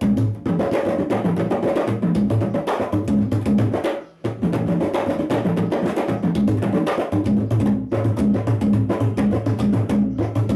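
A pair of Balinese kendang, the two-headed hand drums of gamelan gong kebyar, played together in fast interlocking patterns: deep open strokes mixed with sharp slaps and clicks. The drumming stops for a moment about four seconds in, then starts again.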